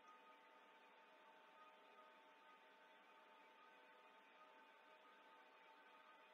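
Near silence: a faint steady hiss with a faint steady tone in it.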